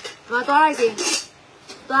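A woman talking in short phrases, with a sharp click right at the start as she handles a boxed toothpaste tube in its plastic wrap.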